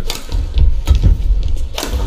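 Badminton rackets striking the shuttlecock during a rally: three sharp hits about a second apart, the last the loudest, over a steady low rumble.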